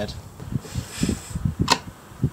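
Thin metal battery connector strips handled by hand on a woven mat: soft knocks and a brief rustle, with one sharp click near the end.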